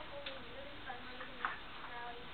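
A few sharp ticks, the loudest about one and a half seconds in, over a steady hiss of camera noise, with a girl's voice reading aloud, faint and hard to make out beneath it.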